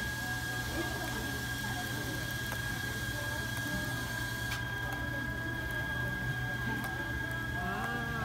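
Steady electrical hum with a constant high-pitched whine over it, with faint voices in the background; a light hiss in the upper range drops away about halfway through.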